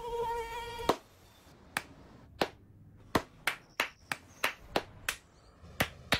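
A mosquito's steady buzzing whine, cut off by a sharp hand clap about a second in. Then comes a string of single hand claps, irregular, roughly two or three a second, as people clap at mosquitoes to swat them.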